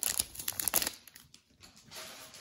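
Plastic trading-card pack wrapper crinkling as hands pull it open, dying away after about a second.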